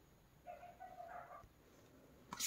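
Faint owl-hoot sound effect from the talking flash card toy's small speaker: one soft, steady hoot-like tone lasting under a second, starting about half a second in.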